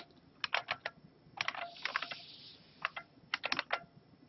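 Typing on a computer keyboard: irregular bursts of a few quick keystrokes at a time, entering a short piece of an equation.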